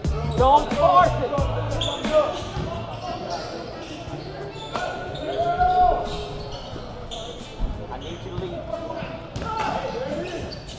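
Game sounds in an echoing gym: a basketball bouncing on the hardwood court, sneakers squeaking, and players and spectators calling out. Low music fades out in the first second and a half.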